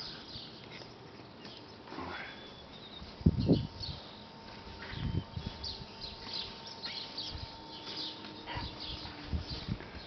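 Birds chirping: short, high chirps scattered throughout. A few low thumps, the loudest a little over three seconds in, and a faint steady tone from about two and a half to eight and a half seconds.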